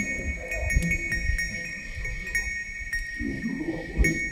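Live-coded electronic improvisation from a Max patch and TidalCycles: two steady high sustained tones over scattered clicks and irregular low sounds. A short voice-like sample comes in about three seconds in.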